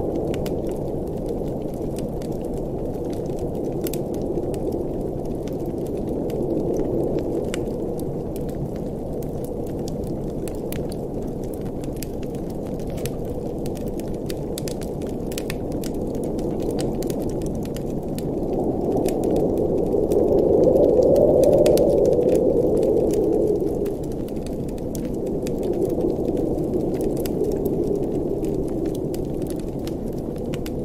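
Wood fire crackling in a fireplace, with frequent small sharp pops, over a steady low rush of blizzard wind that swells into a stronger gust a little past the middle.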